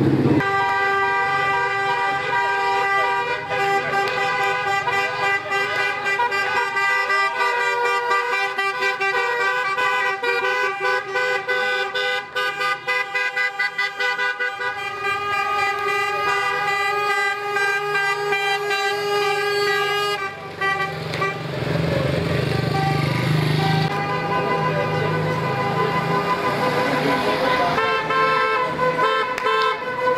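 Car horns from a slow procession of cars, several horns sounding at once in long held blasts, in a street celebration of an election win. The blend of horns changes about twenty seconds in, with more engine and street noise, before new horns join near the end.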